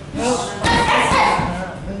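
Boxing pad work: a punch slapping a leather focus mitt about two-thirds of a second in, amid a trainer's short shouted calls.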